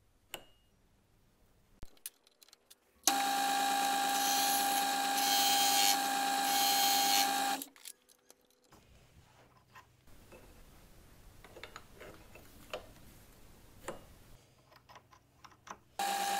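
A few light metal clicks as the tool is handled, then a lathe spinning a collet-held abrasive wheel grinds a flat on a steel rotary broach tool bit: a steady whine with a grinding hiss that rises and falls, for about four and a half seconds, stopping abruptly. After that only a faint low hum and scattered light clicks.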